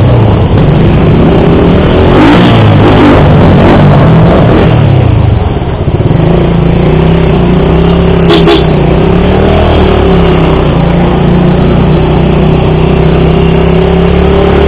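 Keeway Cafe Racer 152's single-cylinder engine under way, its pitch rising and falling a few times in the first five seconds, then running fairly steadily over a constant rush of noise. A brief sharp sound comes about eight seconds in.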